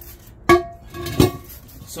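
Aluminum alloy wheel rim knocking against the concrete twice, about a second apart. The first knock rings briefly like struck metal.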